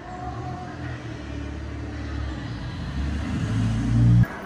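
Deep low rumble from an immersive exhibit's sound system, swelling louder toward the end.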